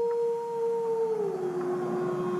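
A long howl, held on one note and dropping to a lower note about a second and a half in.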